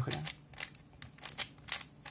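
Plastic 3x3 puzzle cube being turned by hand, its layers clicking sharply about eight times as a short sequence of face turns (U, R) is made.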